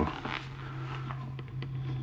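A steady low hum, the background tone that also runs under the speech on either side.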